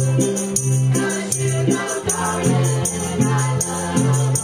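Acoustic string band playing live, fiddles and guitars with group singing, over a bass line that steps between notes about every half second and a steady shaken percussion beat.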